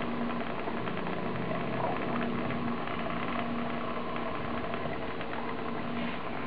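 A small motor or mechanism whirring steadily, with a faint hum and a few light ticks.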